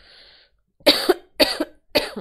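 A woman coughing: a faint breath in, then three loud coughs about half a second apart, starting a little under a second in.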